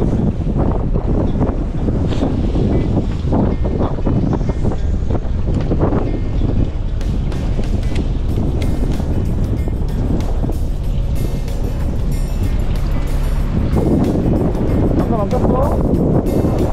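Steady wind noise buffeting the microphone aboard a fishing boat in choppy sea, with background music mixed in.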